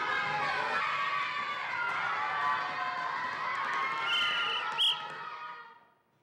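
A classroom full of children chattering and shouting all at once. About four seconds in a whistle is blown twice, a short blast and then a sharper, louder one, and the noise of the class dies away.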